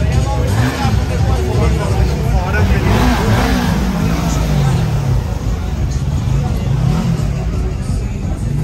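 Motorcycle engine running and revving as it passes through a crowd, its pitch rising and falling, with crowd chatter and bar music around it.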